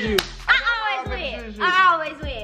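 Background music with a voice singing over a steady beat, and one sharp hand clap just after the start.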